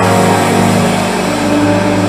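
A held musical chord of steady sustained tones, like a church keyboard pad, with a higher note coming in about halfway through, over a hall full of congregation noise.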